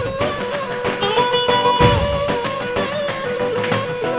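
Live instrumental dabke music: a held, slightly wavering melody line over deep strokes of large double-headed tabl drums, with a long-necked plucked lute.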